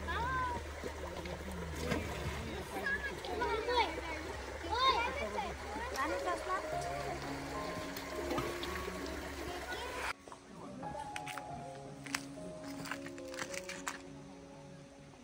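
People's voices talking, with no clear words, over a low steady rumble of outdoor sound. Background music with held notes comes in about halfway. About ten seconds in, the outdoor sound and voices cut off abruptly, leaving only the music.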